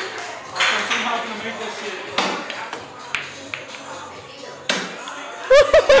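Pool balls clacking: a cue strike and several sharp ball-on-ball clicks spread over a few seconds, under background music and voices. A man shouts loudly near the end.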